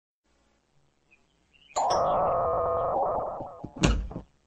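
A held pitched tone starting about two thirds of a second in and lasting about two seconds, then a short low thump just before the end.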